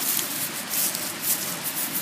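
Dry pine-needle mulch and soil rustling and scraping under a hand digging in to plant a bulb, in irregular crackly scrapes.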